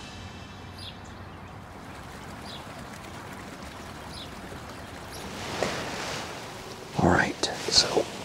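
Steady rushing of a flowing forest stream, with a few faint chirps early on. About seven seconds in, a loud whispered voice cuts in over it.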